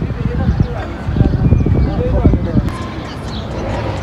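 Indistinct voices of a group of people talking, over heavy, irregular low rumbling thumps on the microphone that ease off about three seconds in.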